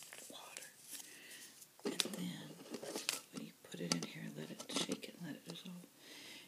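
Soft-spoken woman talking in a low, close voice from about two seconds in. Before that, quiet rustling and small clicks as a small saline packet is handled.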